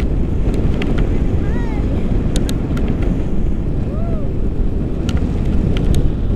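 Airflow rushing over the camera microphone during a tandem paraglider flight: a loud, steady, low rush. A few faint clicks and two short arching tones come through it, about one and a half and four seconds in.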